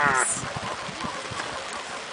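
A loud, drawn-out shouted call to the dog with a falling pitch, cut off within the first quarter second. After it comes quieter steady outdoor noise with scattered faint ticks.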